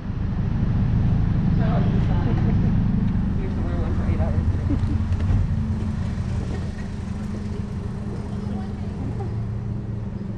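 A loud low rumble and hum that settles into a steadier hum about halfway through, with faint indistinct voices in the first half.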